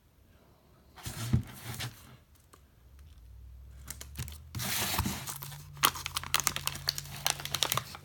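Paper wrapping being torn and peeled off the top of a small firework cake, with crinkling and handling of the cardboard box. A brief rustle comes about a second in; the tearing, full of sharp crackles, runs through the second half.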